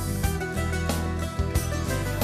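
Tamburica band playing an instrumental passage: plucked tamburica strings over a steady double-bass line, with no voice.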